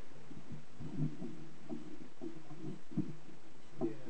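Muffled, indistinct low voice murmuring in a room, with a couple of soft low knocks near the end.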